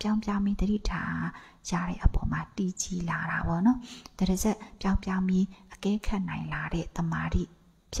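Only speech: a woman talking steadily in Burmese into a close microphone, with a short pause near the end.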